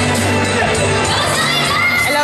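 Livestreamed stage-show audio: music with a steady bass line under a crowd cheering and shrieking.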